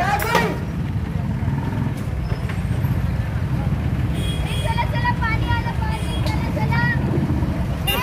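A steady low rumble in the open street, with scattered voices from about four seconds in.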